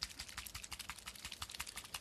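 Citadel paint pot shaken hard, giving a rapid, even clicking rattle of about a dozen strokes a second, to remix paint that separates.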